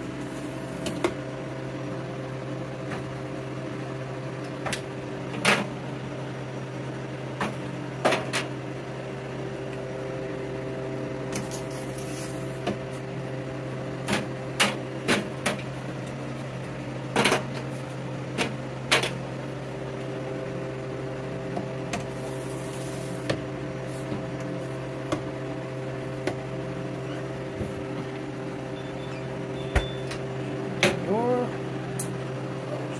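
Harvest Right home freeze dryer humming steadily, its refrigeration unit running. Sharp clicks and knocks come over the hum as the metal trays, the chamber door and the touchscreen controls are handled.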